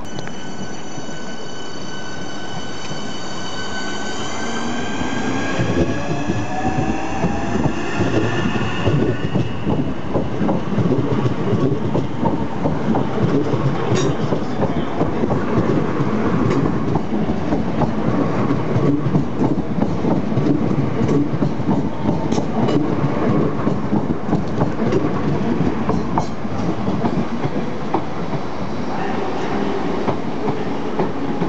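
Southeastern Class 465 Networker electric train picking up speed past the platform. Its traction motors whine for the first several seconds, rising in pitch. Then a loud, steady rumble of wheels, with scattered clicks over rail joints, as the carriages run close by.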